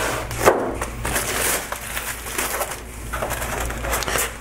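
Plastic wrapping crinkling and rustling as it is pulled open inside a cardboard box, in an irregular run of crackles with a sharp crackle about half a second in.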